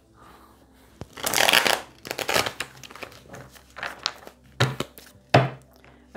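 A tarot deck being shuffled by hand: a rapid rustling run of cards falling together about a second in, the loudest part, followed by several short sharp slaps and taps of the cards.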